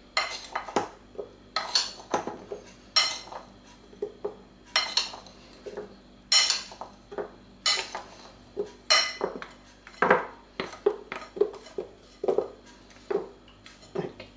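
A metal spoon clinking against a glass bowl about once a second, unevenly, as flour-dusted cherries are scooped out and dropped onto cake batter.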